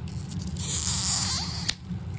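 Plastic wrapping being pulled and torn off a toy package: a crackling rip of about a second that ends in a sharp snap.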